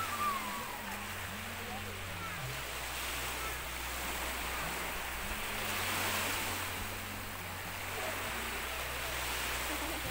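Small waves washing over a shallow reef shore in a steady hiss, the wash swelling about six seconds in and again near the end. Brief voices are heard at the start.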